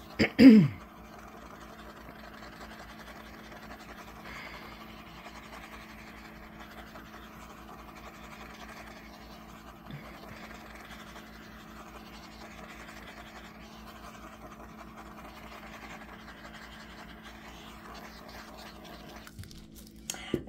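Small handheld butane torch hissing steadily as it is swept over freshly poured epoxy resin, cutting off shortly before the end.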